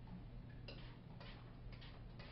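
TRESemmé Thermal Creations Heat Tamer spray bottle spritzed onto hair: four short, faint hissing puffs, the last two close together near the end.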